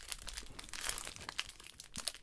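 Foil trading card pack wrapper crinkling in a quick, fine crackle as gloved hands pull it open.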